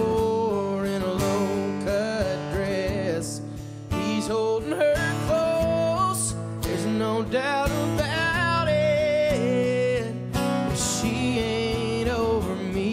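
Texas country song with guitars and a man singing.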